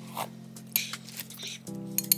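Eating sounds: sinigang soup sipped from a spoon, with a short hissing slurp about a second in and a few light clicks of utensils near the end, over steady background music.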